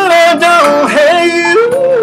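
A man singing a long, wordless vocal run, his pitch bending up and down through several quick turns. Steady held notes of a backing track sound underneath, and they carry on after the voice stops near the end.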